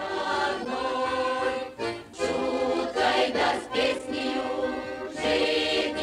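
A choir singing, many voices holding long notes in phrases that break off and start again about once a second.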